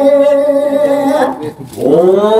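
A woman sings a long, steady held note of Balinese geguritan chant into a microphone; it fades out a little over a second in. Just before the end a man's voice comes in on a rising note, starting the translation of the verse.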